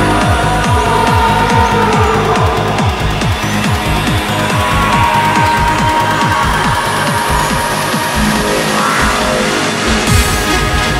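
Tech trance dance music with a steady, fast kick drum under sustained synth lines; the deepest bass drops away for the last two seconds or so before returning.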